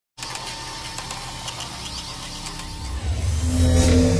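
Hissing static noise with scattered crackles, joined by a deep rumble that swells over the last second: an edited intro sound effect.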